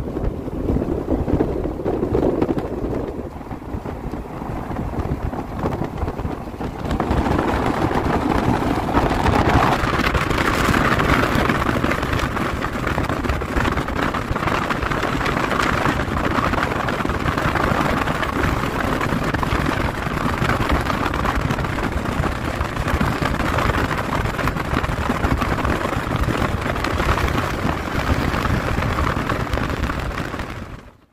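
Road and wind noise of a moving car, with wind buffeting the microphone; the rush grows louder and brighter about seven seconds in.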